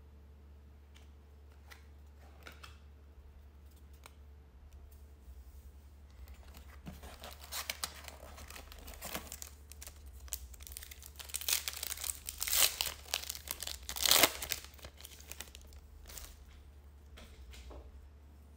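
A Topps Gallery baseball card pack's wrapper being torn open and crinkled by hand. It starts with light handling clicks, then a spell of crinkling and ripping, loudest in a few sharp rips about three-quarters of the way through.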